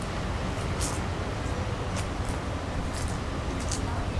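Steady outdoor background noise, heaviest in a low rumble, with about six brief, faint, high-pitched ticks scattered through it.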